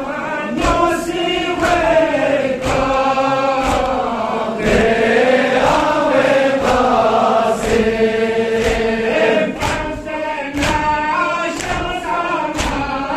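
A Balti noha, a Shia lament, sung by a male reciter and a crowd of men chanting together. Sharp slaps about twice a second keep the beat, typical of matam chest-beating that goes with a noha.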